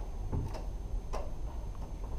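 A few light, irregular clicks or taps over a steady low hum.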